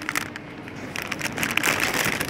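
A clear plastic sleeve around a potted orchid crinkling and crackling in irregular bursts as a hand pulls and handles it.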